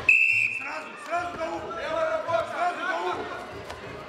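Referee's whistle: one loud, steady blast of about half a second, signalling the start of the wrestling period. Voices call out over the hall from about a second in.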